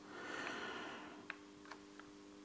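A soft breath lasting about a second, then two light clicks, over a faint low steady hum.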